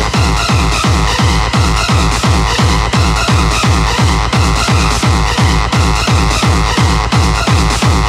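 Hardcore gabber dance music mixed from vinyl: a fast kick drum, each hit falling in pitch, about three to four a second, under dense electronic synth layers, as one record is blended into the next.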